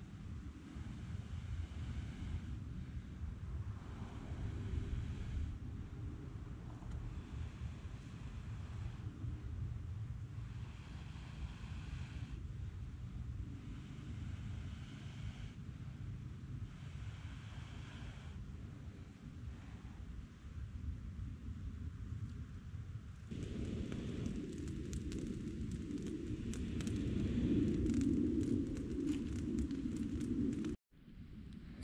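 Repeated long breaths blown into a smoking tinder bundle, one hiss every two seconds or so, over wind rumbling on the microphone. About 23 seconds in it turns louder, with rustling and crackling as the bundle flames up and is laid into the fire pit.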